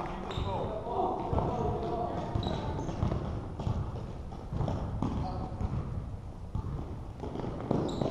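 A basketball bouncing on a hardwood gym floor in irregular thuds, with players' footsteps and indistinct voices of players and spectators, echoing in a large gym hall.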